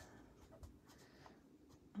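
Near silence, with the faint strokes of a Stampin' Blends alcohol marker colouring on cardstock.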